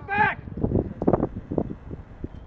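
A man's short shout from the field right at the start, then fainter scattered calls and low rustle of play on an open pitch, with some wind on the microphone.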